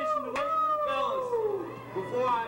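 A young man's long, high yell of celebration, sliding down in pitch over about a second and a half, with other voices shouting around it.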